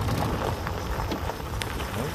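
Golf cart rolling along a gravel driveway: a steady crunching rumble of tyres on gravel, with scattered small clicks.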